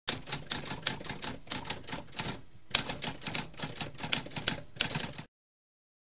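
Typewriter keys clacking in a rapid run of keystrokes, with a brief pause about halfway. The typing stops abruptly about a second before the end.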